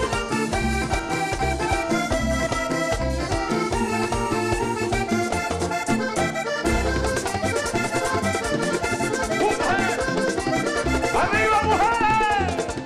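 Live vallenato band playing an instrumental passage led by a diatonic button accordion, over electric bass, guitar and percussion.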